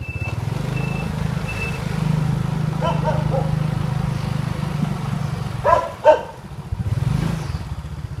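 Small motorbike engine running at low speed as it rolls in, a steady low hum that eases off about six seconds in and picks up briefly again. A short electronic beep repeats a few times at the start.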